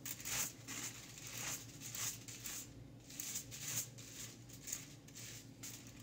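Tint brush stroking bleach lightener onto a section of hair laid over aluminium foil: soft, irregular scratchy brush strokes, about one to two a second, as the lightener is feathered on thinly near the root.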